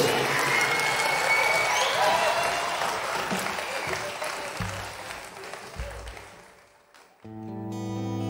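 Live concert audience applauding with a few whistles and cheers, fading away over about six seconds. After a moment of silence, an acoustic guitar starts playing a new piece.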